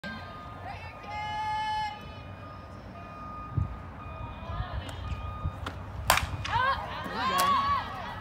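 A softball bat hitting a pitched ball with one sharp crack about six seconds in. Spectators shout and cheer right after it.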